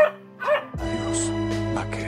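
A puppy yelps briefly, then a held chord of music comes in under a second in.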